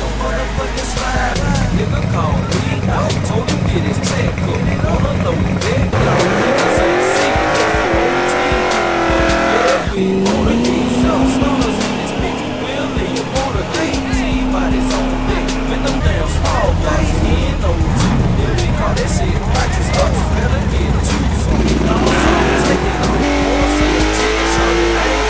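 Drag-racing cars with engines revving and tyres squealing, mixed with a hip hop beat. About six seconds in, an engine's pitch climbs and then holds.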